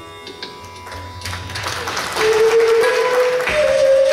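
Bansuri flute entering about two seconds in with long held notes, stepping up in pitch shortly before the end, over low hand-drum strokes.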